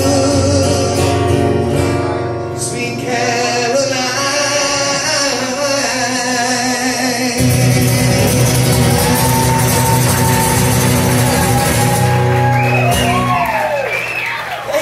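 A man singing live with his acoustic guitar through a small PA, with long held notes over strummed chords; the song comes to its close near the end.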